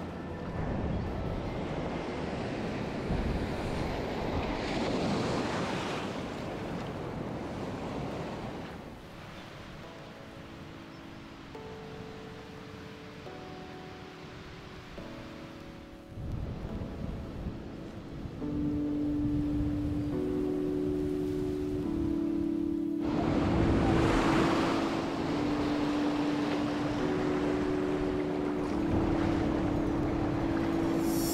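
Waves washing up the shore, with wind on the microphone. About a third of the way in, background music with sustained synth notes fades in and grows louder over the surf.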